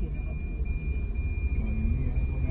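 Low, steady rumble of a car's engine and tyres heard from inside the cabin while driving, with faint voices talking and a thin steady high tone.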